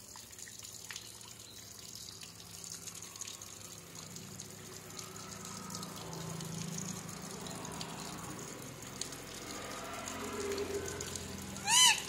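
Water streaming and splashing down onto a wire birdcage, a steady wash that grows somewhat louder after the first few seconds.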